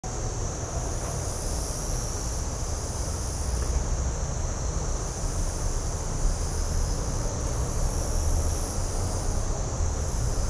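Wind rumbling on the microphone under a steady, high-pitched insect chorus, with a still higher note that starts and stops every second or two.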